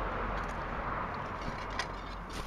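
Steady wind rushing over a clip-on microphone outdoors, with a couple of faint ticks near the end.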